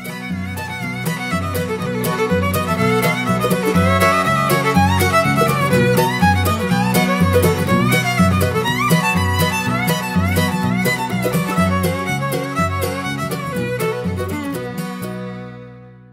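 Bluegrass fiddle playing quick runs with slides in the key of B, over a guitar and bass accompaniment in a steady alternating bass rhythm. The music fades out near the end.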